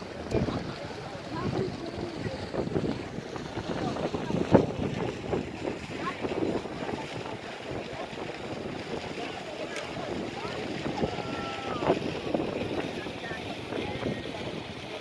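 Crowd chatter: many voices talking at once, none close enough to make out, with wind rumbling on the microphone.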